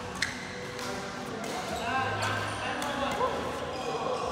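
Badminton in a sports hall: a sharp racket hit on the shuttlecock about a quarter of a second in, among players' voices and short squeaks of shoes on the court.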